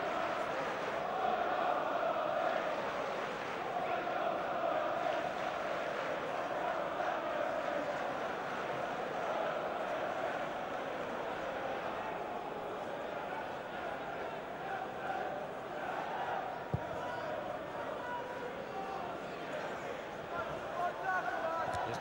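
Football stadium crowd: thousands of fans keeping up a steady hum of voices and chanting. A single short thud sounds about seventeen seconds in.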